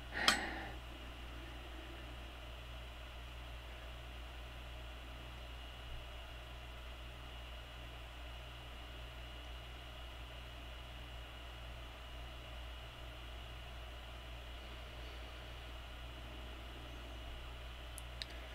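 Faint steady low hum with a light hiss: quiet room tone, with no distinct sound events.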